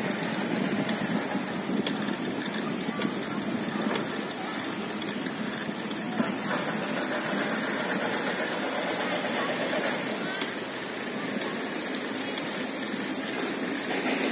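Steady outdoor background hiss with a high, even buzz over it, swelling slightly in the middle.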